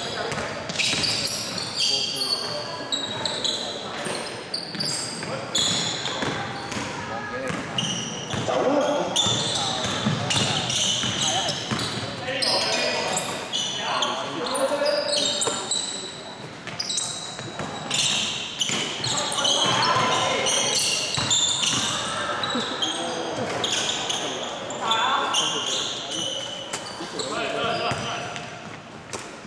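Basketball game play on a wooden gym floor: the ball bouncing and thudding, sneakers squeaking in short high squeals, and players calling out, all echoing in a large hall.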